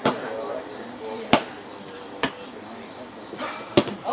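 Boffer weapons striking in sparring: four short, sharp smacks, the loudest about a second and a half in.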